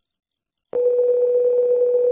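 Synthesized electronic tone, like a telephone busy or dial tone: after a moment of silence, one steady single-pitched tone starts about three-quarters of a second in and holds.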